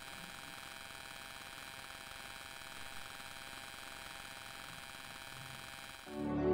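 Faint, steady electrical hum and hiss with thin high whining tones, with no distinct sound event.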